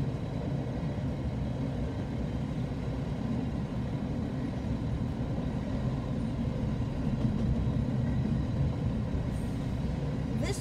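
Double-stack intermodal freight train rolling past a grade crossing: a steady low rumble of wheels and cars on the rails, heard from inside a parked car.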